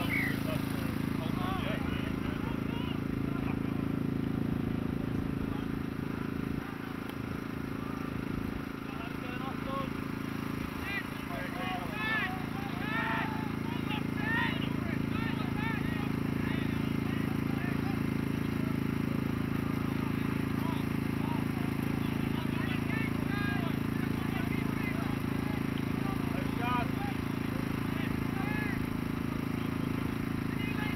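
Indistinct shouts and calls from rugby league players and spectators, coming in short bursts and busiest midway and near the end, over a steady low background hum.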